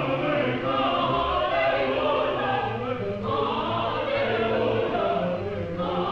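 Choir singing long held chords, with a short break between phrases about halfway through and another near the end.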